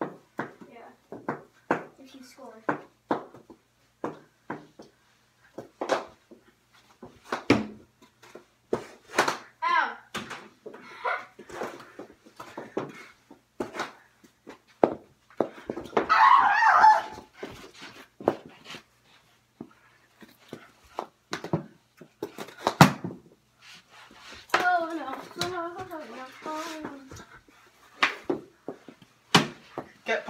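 Mini hockey sticks knocking against each other and the ball in quick, irregular clacks during knee-hockey play, with kids' voices in between and a loud shout partway through.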